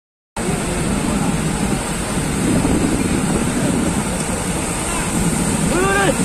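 Water gushing from an open spillway gate of a large dam and rushing down the riverbed below: a loud, steady rush of noise. Near the end a short pitched call rises and falls over it.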